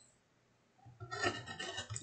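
A craft knife blade scraping through card stock against a glass cutting mat: a short scratchy cut that starts about a second in, after a near-silent pause.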